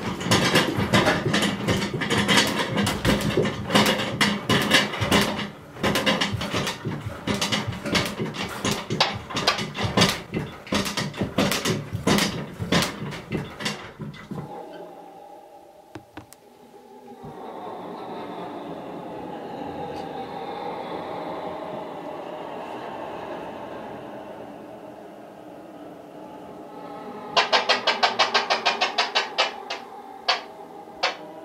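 Rapid, irregular loud knocking and clattering for about fourteen seconds, then a quieter steady drone with faint held tones, then near the end a quick, even run of loud clicks.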